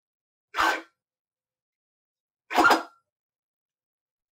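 Stepper motor on a micro-stepping drive driving a belt-driven linear stage on fast moves: two short bursts of motor and carriage noise about two seconds apart.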